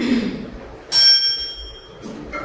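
A single bright bell-like ding about a second in, ringing with several clear high tones and fading away over about a second.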